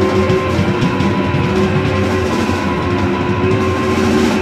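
Loud live rock band playing: electric guitar holding sustained notes over bass guitar and drum kit, steady and dense throughout.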